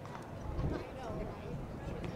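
Distant voices of players and spectators calling across a soccer field, over a low, uneven rumble.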